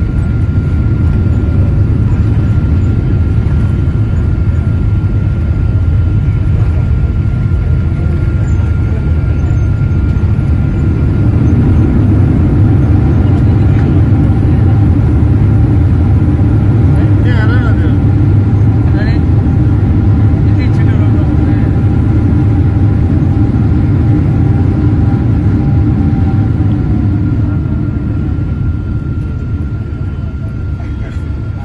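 Loud, steady low rumble inside a jet airliner's cabin as it rolls along the runway after landing. The rumble swells about a third of the way in, carrying a steady hum, and eases off near the end.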